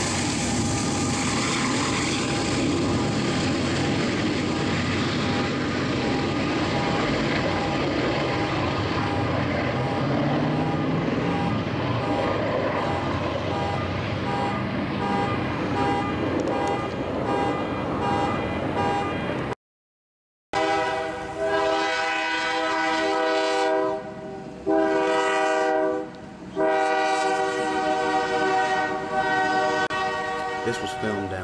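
Freight train passing with a steady rumble of locomotive and wheels, its horn growing audible in the later part. After a short break in the sound, a diesel locomotive horn sounds loudly in three blasts, the last one held, as the train crosses a road.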